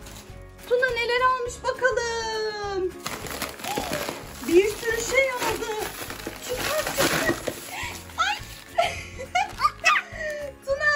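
Thin plastic grocery bag rustling and crinkling as a toddler's hands rummage through it and pull out packaged snacks, starting a few seconds in. Background music with a voice runs under it.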